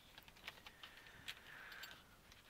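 Faint crinkling of a clear plastic parts bag being handled, with small light clicks.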